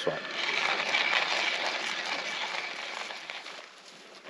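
Hand-crank coffee grinder being turned, its burrs crunching through coffee beans in a steady gritty grinding that fades out near the end.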